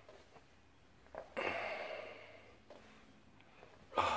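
A person's breathy sigh, once, starting about a second and a half in and lasting about a second, in an otherwise quiet room.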